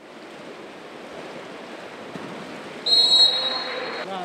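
Echoing indoor-pool ambience with water splashing from swimming water polo players, then about three seconds in a water polo referee's whistle gives one long, high blast, the loudest sound.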